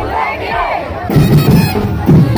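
A crowd of voices shouting together, then drums and band music coming in about a second in.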